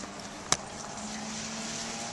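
A steady low hum under faint background noise, with a single sharp click about half a second in.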